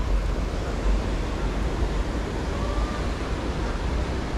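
Steady rushing noise of wind buffeting the microphone over the flowing river below, with a heavy low rumble and no distinct events.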